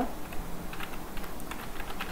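Typing on a computer keyboard: an irregular run of keystrokes.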